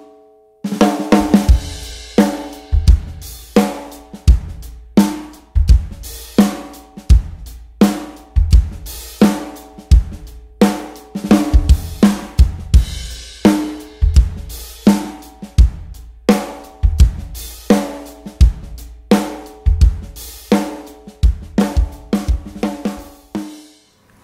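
Drum kit groove: bass drum and cymbals under snare backbeats played as rimshots, with about the first third of the stick across the rim and the tip on the head. The snare sounds mid-toned and full, with a strong ringing overtone after each hit.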